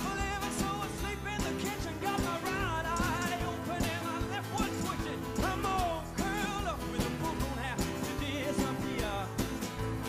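Live folk-pop band playing an instrumental passage: acoustic guitar, drum kit, tambourine and keyboard over a steady beat, with a wavering melodic lead line on top.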